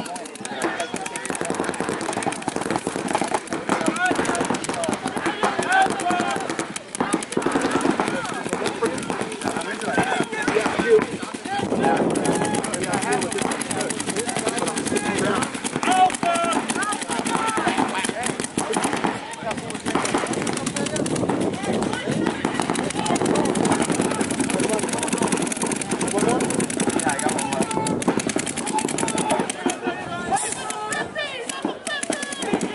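Rapid, near-continuous paintball marker fire from several players at once, strings of fast shots overlapping with no real pause.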